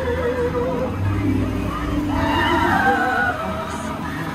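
Splash Mountain's show soundtrack playing through the animatronic scene: music with a character's voice, which comes in stronger about halfway through and rises and falls in pitch.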